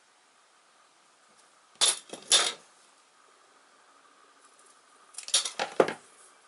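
Small thin wooden strips clattering as they are handled and sorted by hand on a worktable, in two short bursts, one about two seconds in and one near the end.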